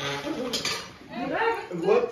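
Kunekune pigs chewing and crunching lettuce leaves, with sharp clicky chomps in the first second. A voice comes in during the second half and is loudest near the end.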